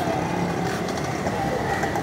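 Busy street ambience: a steady wash of traffic noise with faint, indistinct voices in the background.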